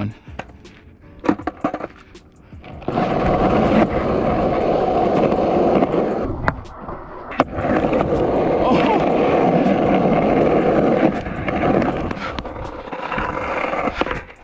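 Skateboard wheels rolling loudly on concrete, with a sharp clack about six and a half seconds in and another about a second later as the board pops for a grab trick and lands, then rolling again and easing off near the end.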